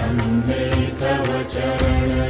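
Devotional Sanskrit hymn to Shiva in Hindustani style: a long held note over a steady drone, with light, regularly spaced percussion strokes.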